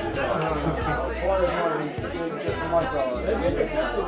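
Several people talking at once in overlapping, indistinct conversation.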